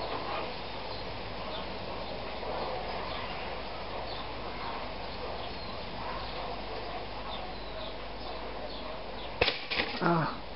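Electric pop-up toaster's spring-loaded carriage releasing with a sharp snap near the end, popping the toast up. Before that there is only a steady low hiss while it toasts.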